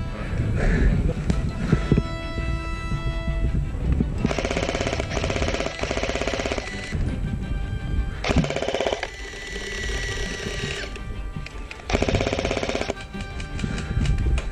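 G&G MG42 electric airsoft machine gun firing fully automatic bursts of very rapid clatter: a long burst about four seconds in, a short one near eight seconds and another near twelve seconds. Background music plays under it.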